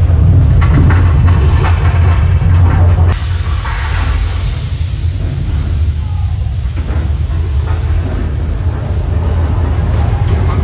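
Staged earthquake effects in a mock subway station: a loud, deep rumble, joined about three seconds in by a sudden hissing rush that carries on to the end.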